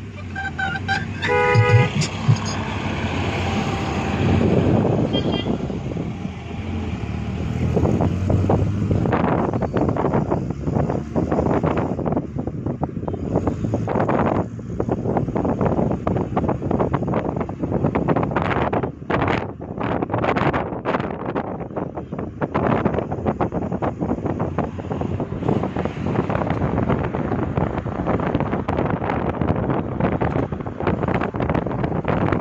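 Road noise and wind buffeting the microphone of a moving vehicle on a highway, fluttering unevenly throughout. A vehicle horn toots briefly about a second in.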